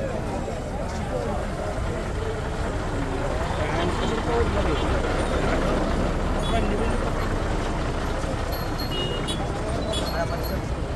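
Crowd chatter over the low, steady running of a lorry's engine.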